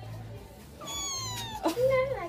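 Kitten meowing: one high, thin meow about a second in that slides down in pitch. It is followed near the end by a louder, lower rise-and-fall voice sound.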